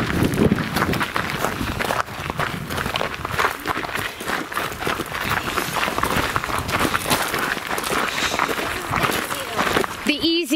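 Footsteps crunching on a gravel trail as several people walk, a quick, steady patter of crunches close by.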